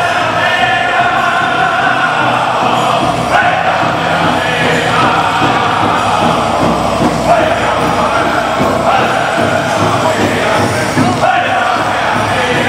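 Pow wow drum group singing an honor song in unison, voices carrying a high chanted melody over a steady beat on a large shared hand drum.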